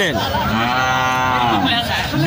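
A cow mooing: one long call of about a second and a half, its pitch rising slightly and then falling away at the end.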